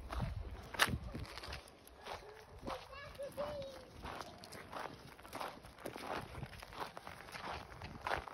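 Footsteps crunching on a dirt and gravel path, a regular series of steps, with a brief faint pitched call about three seconds in.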